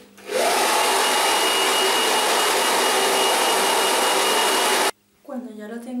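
Handheld hair dryer running steadily: a loud, even blowing hiss with a thin high whine. It comes on about half a second in and cuts off abruptly about a second before the end.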